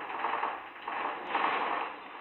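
Earthquake sound effect: a noisy din of a house shaking, surging and easing in several waves.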